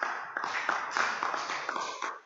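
Audience clapping: a short round of applause from a seated crowd, dying away near the end.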